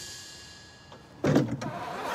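A single sudden heavy thump with a short clatter about a second in, after a quiet stretch.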